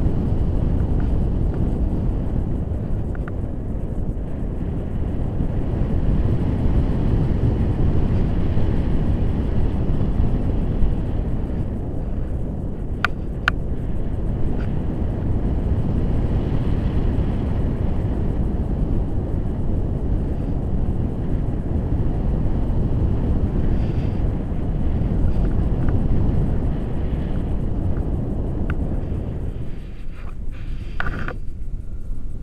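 Steady, loud wind buffeting the microphone of a selfie-stick camera as the paraglider flies, a low rushing noise without pauses. Two short clicks come about thirteen seconds in.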